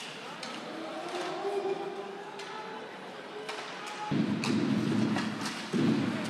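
Ice hockey rink sound: faint arena murmur with scattered short clicks of sticks and puck on the ice. A bit past four seconds a much louder, dense rumble of noise comes in suddenly, runs for about a second and a half, then drops away.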